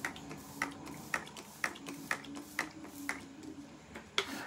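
Fine-mist pump bottle of make-up setting spray being pumped over and over: a series of short spritzes, about two a second, over a faint steady hum.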